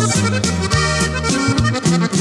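Norteño corrido instrumental passage: an accordion plays the melody over a bass line that steps between notes and a steady drum beat.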